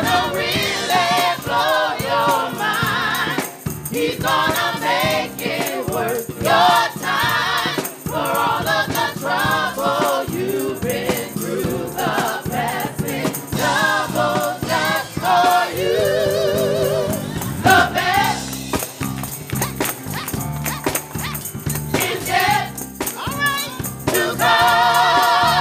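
Gospel choir singing with instrumental accompaniment, the sung phrases wavering and sustained over steady low notes.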